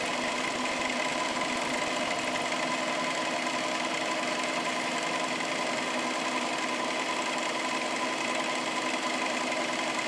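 Milling machine running with a dovetail cutter in the spindle: a steady, even whine of several constant tones. A low rumble underneath drops away about two and a half seconds in.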